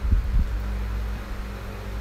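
Low steady background hum with a faint steady tone above it, and a few soft low thumps in the first half second.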